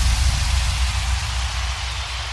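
Melbourne bounce track in a breakdown: a wash of white noise over a low, steady bass drone, slowly fading, with no melody or beat.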